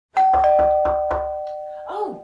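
Two-note ding-dong doorbell chime, a higher note then a lower one, ringing out and slowly fading, over a quick run of thuds.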